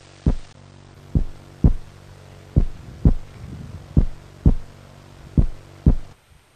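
Heartbeat sound effect: five double low thumps, repeating about every 1.4 s, over a steady low hum.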